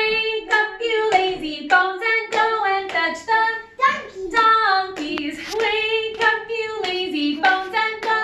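A woman and young children singing a children's action song together, a steady run of short sung notes that step up and down in pitch.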